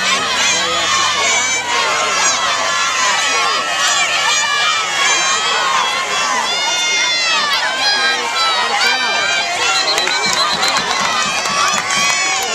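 Crowd of football spectators in the stands shouting and cheering through a play, many voices overlapping. Near the end a referee's whistle trills briefly.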